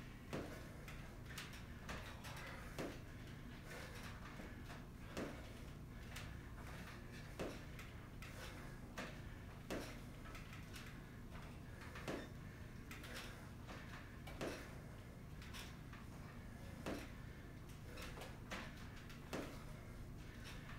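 Faint knocks from step-ups onto a wooden chair, one about every two and a half seconds with lighter ones in between, over a low steady hum.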